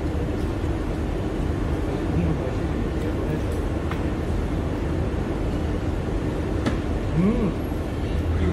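Steady hum and hiss of a busy restaurant dining room, with faint voices in the background and a few light clicks of utensils and dishes at the table.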